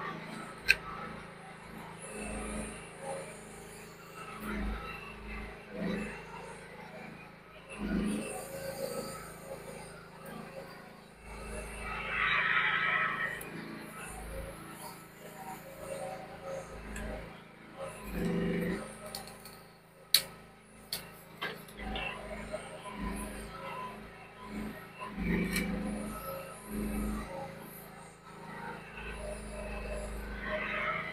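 Mini excavator engine running at a steady speed while the operator works the boom and bucket, with scattered knocks and a sharp click about two-thirds of the way through.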